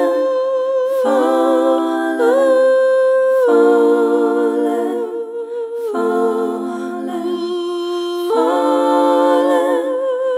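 Slow song with wordless layered vocals humming long sustained notes with vibrato in close harmony; the chord changes every two to three seconds.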